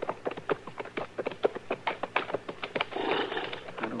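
Radio-drama sound effect of footsteps: a quick, irregular run of sharp taps as two men walk.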